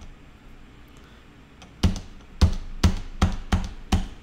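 Single key presses on a computer keyboard, each a sharp click with a low thud. After about two seconds of quiet they come one at a time, roughly two or three a second.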